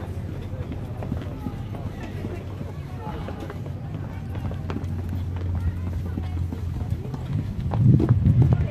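Indistinct voices of people nearby, with footsteps and a steady low hum that grows a little louder in the second half.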